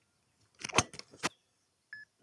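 Mizuno ST190 titanium driver striking a golf ball on a full swing: one sharp, loud crack a little under a second in, with a fainter click about half a second later. The strike is a solid one that sends the ball off at high speed.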